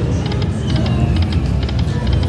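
Aristocrat Buffalo Gold slot machine playing its game sound as the reels spin and stop, with a run of short high chimes in quick twos and threes, over a steady low casino rumble.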